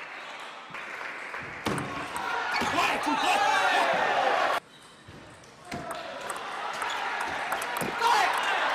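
Several voices calling and shouting in a large hall, with a few sharp knocks among them; the voices cut off suddenly just past the middle and return about a second later.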